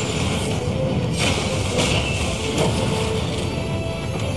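Anime fight soundtrack: music under the sound effects of an ice attack smashing into shards, with sudden noisy surges about a second in and just under two seconds in.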